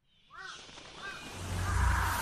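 A crow cawing twice in the first second, then a low rumble swelling in near the end.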